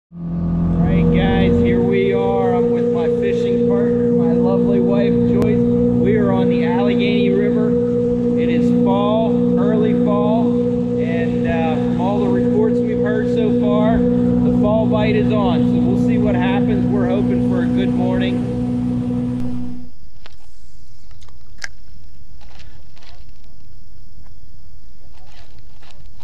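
Outboard motor running at speed, a steady drone with a person's voice over it. About 20 seconds in it stops abruptly, leaving a quieter steady hiss.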